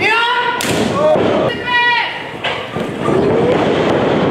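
A heavy thud on the wrestling ring about half a second in, among short, high-pitched shouts.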